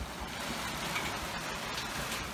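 Sea water rushing and splashing along a sailing yacht's hull as she sails through choppy water, with wind buffeting the microphone.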